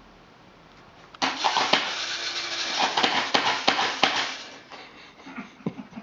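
A homemade push-button dog-treat dispenser's small electric motor starts suddenly and runs with a dense clatter for about three and a half seconds, then trails off into a few scattered clicks.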